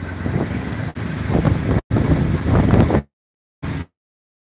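Wind and road noise on the microphone of a moving open-sided auto-rickshaw (tuk-tuk). The sound cuts out completely about three seconds in, with one short burst returning near the end: live-stream audio dropping out.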